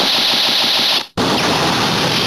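Ziku-Driver finishing-attack sound effect: a loud rushing, rattling noise that cuts out abruptly about a second in and starts again straight away.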